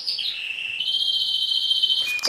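A small songbird singing: a high whistled trill that drops in pitch over the first half second, then a long, steady, rapidly warbled trill.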